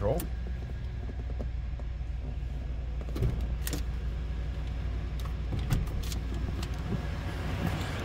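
A 1996 Cadillac Fleetwood's 5.7-litre 350 V8 idling steadily, heard from inside the cabin, with a few scattered clicks and knocks.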